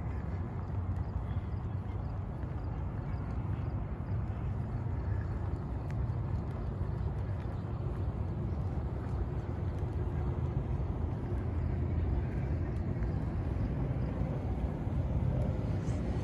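A steady low rumble of background noise, growing slightly louder in the second half, with a few faint ticks.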